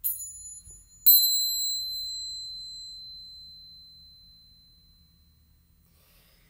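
Tingsha cymbals struck together twice, about a second apart, the second strike louder, each leaving a high, bright ring that fades slowly over several seconds.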